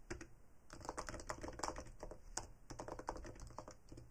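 Computer keyboard typing: a quick, faint run of keystrokes that starts under a second in and thins out near the end.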